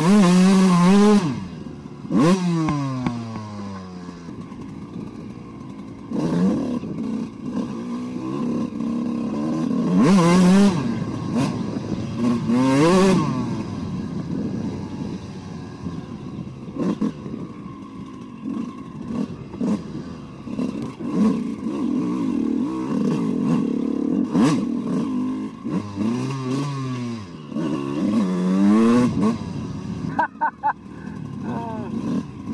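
Two-stroke exhaust of a 2002 Suzuki RM125 dirt bike with an Eric Gorr 144 cc big-bore kit, revving up and falling back over and over as the throttle is worked through the trail. The hardest bursts come about a second in, around ten and thirteen seconds, and again near the end.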